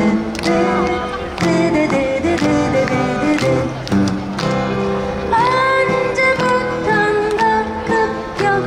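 Two steel-string acoustic guitars strummed together in a steady rhythm. A voice comes in singing the melody over them about five seconds in.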